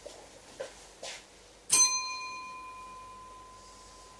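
A small bell struck once, a little under two seconds in, its clear ring fading slowly over the following seconds: the bell that marks the start of Mass as the priest comes to the altar. A few soft knocks come before it.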